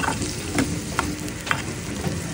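Sliced onions sizzling in oil in a frying pan, stirred with a perforated metal spoon that clicks against the pan about twice a second.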